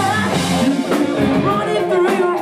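A rock band playing live, with a male lead singer singing into a microphone over electric guitar.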